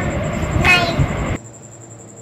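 A child's brief high-pitched vocal reply over a steady low rumble of room noise; the rumble cuts off abruptly a little past halfway, leaving a much quieter background with a faint, thin, high steady whine.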